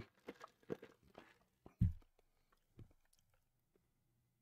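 A few faint scattered clicks and knocks, with one louder low thump just before two seconds in and a smaller knock a second later.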